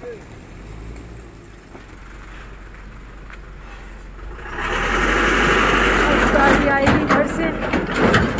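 A vehicle engine runs with a low steady rumble, then about halfway through a much louder, even rushing noise takes over.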